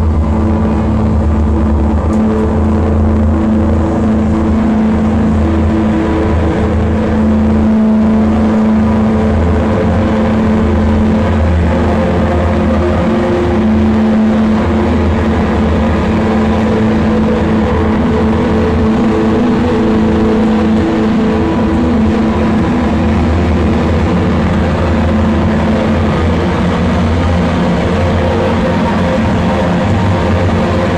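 A live drone/noise-rock band playing loud, heavily amplified guitar and bass, holding low notes that shift every few seconds, with no drumbeat.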